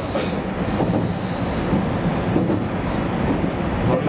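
Running noise of a JR Kyushu YC1 series diesel-electric hybrid railcar heard inside the cab: a steady rumble of wheels on rail and drivetrain as it rolls along, with faint high-pitched tones briefly in the second half.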